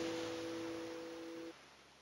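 Final chord of an acoustic guitar ringing out, dying away to two sustained notes that cut off suddenly about one and a half seconds in.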